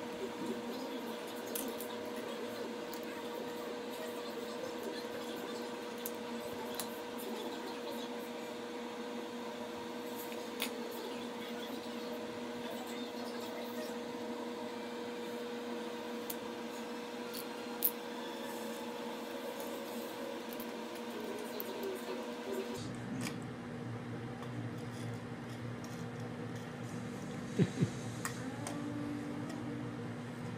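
Steady room hum with a few sharp clicks of small plastic Lego bricks being handled and snapped together: one a little past ten seconds in, one near eighteen seconds, and two close together near the end. The hum's low end changes about three-quarters of the way through.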